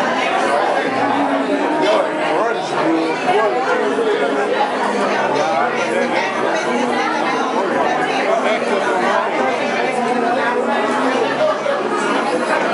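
Many people talking over one another, a steady hubbub of indistinct conversation in which no single voice stands out.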